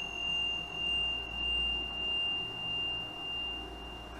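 A steady, high, pure ringing tone held at one pitch, over a low hum that swells and fades in level about once a second.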